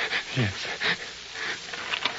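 Speech from a radio drama: a single short spoken "yes" that falls in pitch, followed by a breath, over faint background hiss.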